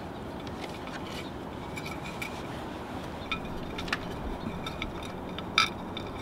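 Faint clicks and light scrapes of aluminum tie-down wire and fingers against a ceramic bonsai pot, over a steady background hiss; the sharpest click comes about five and a half seconds in.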